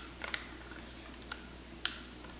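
A few light, sharp metallic clicks from a Mossberg 500 pump shotgun as its slide and action bars are wiggled back into the receiver during reassembly.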